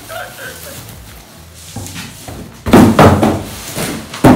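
Packaging being handled as a foam-packed, plastic-wrapped monitor is lifted out of its cardboard box: quiet rustling at first, then loud rough scraping and rustling bursts in the last second and a half.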